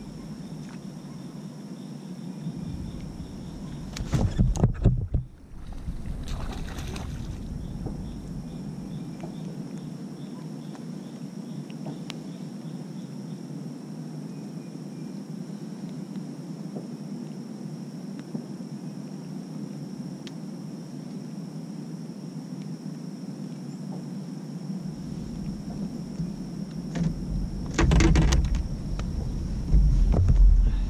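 Steady low wash of water and wind noise around a fishing kayak, with a thin steady high tone. A loud burst of noise comes about four seconds in, and more loud noise near the end as a largemouth bass is landed at the kayak.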